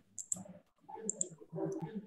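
A few short, sharp clicks over faint, broken voice sounds, heard through a video call.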